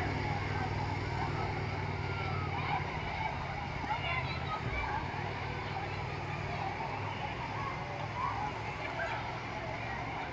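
Crowd hubbub at a busy outdoor swimming pool: many distant voices and children's shouts blending together, over a steady low rumble.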